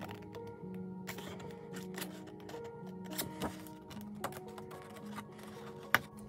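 Small scissors snipping cardstock in short, scattered clicks, one sharper near the end, over background music with soft held notes.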